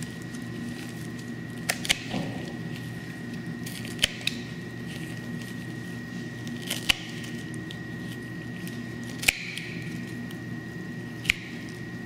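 Hand pruning shears snipping through the chest wall of a preserved dog alongside the sternum: about seven sharp, short snaps spaced roughly two to three seconds apart, two of them in quick pairs, as the blades close through each rib.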